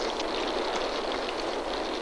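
Steady rain falling, an even hiss with no single drops or knocks standing out.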